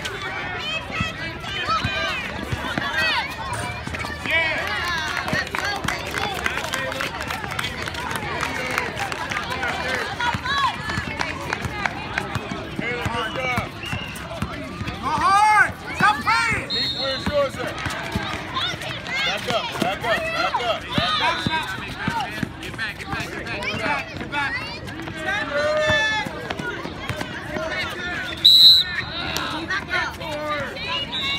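Many voices of children and adults talking and calling out at once around a basketball game, with short knocks of the ball and feet on the court. A short, loud, shrill sound cuts through near the end.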